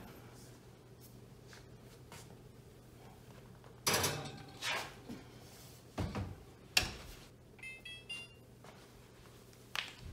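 A glass loaf pan clatters onto a metal oven rack, then the oven door shuts with a thump and a sharp clunk. A quick run of short electronic beeps from the oven's control panel follows. A steady low hum runs under the first part.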